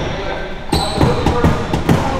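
A basketball bouncing several times on a hardwood gym floor in the second half, at the free-throw line, with players' voices around it. A brief high-pitched squeal comes just before the bounces.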